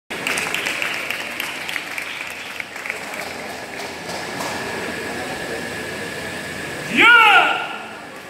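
Crowd noise and scattered clapping in a large hall. About seven seconds in, a man gives one loud shout that rises and then falls in pitch, like a karateka calling out the kata's name before performing Jion.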